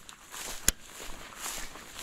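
Footsteps through tall grass, with a soft rustling haze, and one sharp click a little under a second in.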